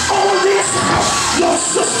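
Loud live gospel church music with a congregation shouting and cheering, and a man's voice shouting into a microphone over it.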